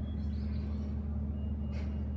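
Steady low background hum with no clear event, and a faint brief rustle near the end.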